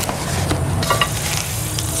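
Cardboard shipping box rustling and scraping as its flaps are pulled open around a bundle of metal poles, with a few light clicks from the poles shifting. A steady low hum runs underneath.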